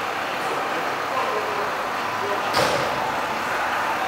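A coach's engine running steadily at idle, with one sharp knock about two and a half seconds in.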